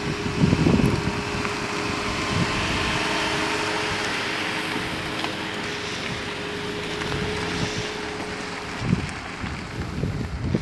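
A Jeep Renegade driving along a dirt track: engine running and tyres on loose sand and gravel, heard as a steady even noise with a faint hum.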